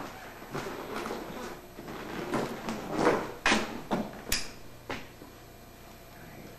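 Irregular knocks and bumps with some rustling, loudest around the middle, with one sharp click just after.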